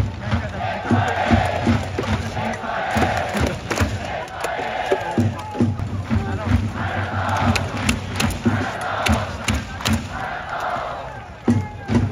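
Football supporters chanting in unison, shouting the same short phrase over and over, with drums beating steadily underneath.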